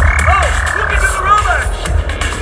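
Stage-show soundtrack over loudspeakers: a comic cartoon sound effect, a long warbling tone that slides slowly downward in pitch with short chirps around it, over a steady bass beat.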